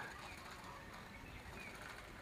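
Faint outdoor background with a few faint, short bird chirps.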